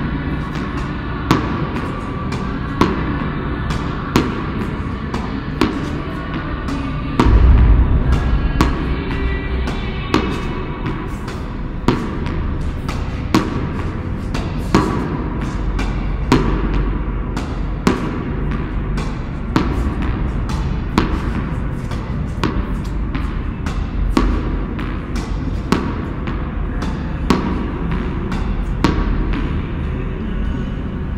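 Sharp clicks of a tennis racket hitting a ball, the loudest about one every second and a half, over background music. A deep boom comes about seven seconds in.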